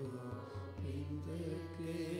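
Sikh kirtan: a man singing a Gurbani hymn in long, wavering ornamented notes over a steady low drone, with light drum strokes beneath.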